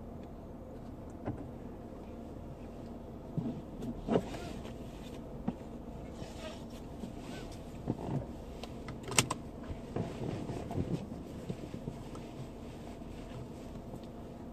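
Steady low hum inside a stationary car, with scattered clicks, knocks and rustles of things being handled in the cabin; the sharpest click comes about nine seconds in.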